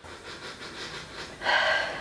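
A woman sniffing a scented candle held to her nose: a long, soft breath in through the nose, then a louder, short breathy sound about a second and a half in.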